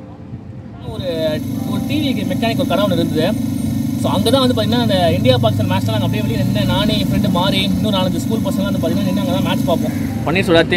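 A man talking over a steady rumble of road traffic, which comes in about a second in.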